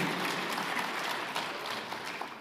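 Light applause from a seated audience, an even patter that eases slightly toward the end.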